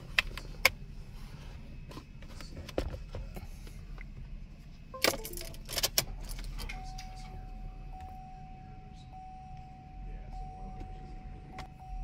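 Sharp clicks and rattles from a USB cable being plugged into a laptop and things being handled, with a cluster of louder clicks about five seconds in. From about seven seconds in, a faint steady electronic whine holds over a low hum, with the car's ignition on and the engine off.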